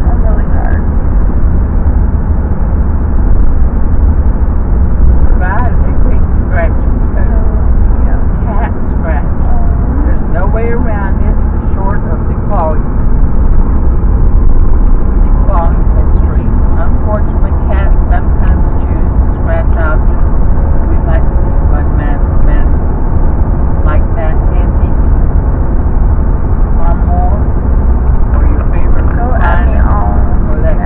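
Loud, steady low rumble of road and engine noise inside a moving car's cabin, with indistinct voices heard faintly over it.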